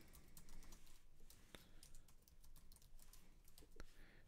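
Faint typing on a computer keyboard: a run of quick, unevenly spaced key clicks.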